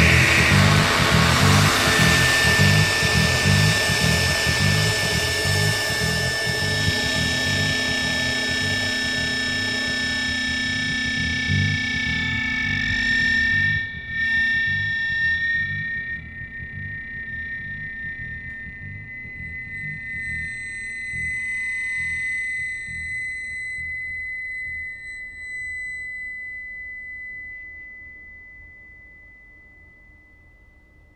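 Loud, distorted noise-rock trio of electric guitar, bass and drums, with a fast pulsing low end. About halfway through the band drops away, leaving a single held high tone that slowly fades out.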